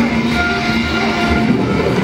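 Dark-ride ambience: a steady low rumble with a few held tones running under it.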